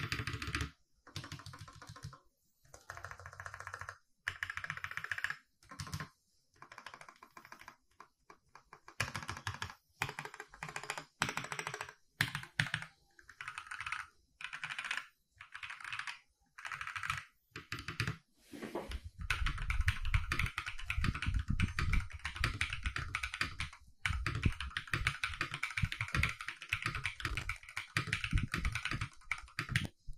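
Custom mechanical keyboard with linear switches and XDA-profile PBT keycaps (Feker FK84T kit, Akko CS Vintage White switches) being typed on. Short runs of keystrokes separated by pauses, then continuous fast typing from about two-thirds of the way through, louder and denser.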